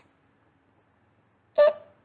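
Near silence: room tone for about a second and a half, then a voice speaks one word near the end.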